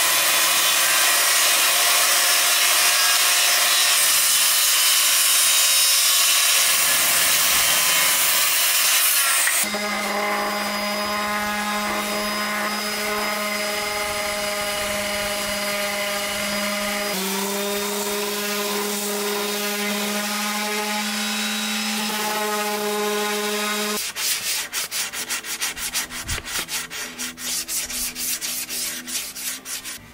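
Circular saw cutting through a wooden board, loud and steady for about the first ten seconds. Then a handheld electric orbital sander runs on the wood with a steady motor hum, changing near the end to a rapid fluttering scrape.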